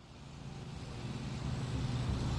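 A steady rushing noise with a low hum, fading in from silence and growing steadily louder.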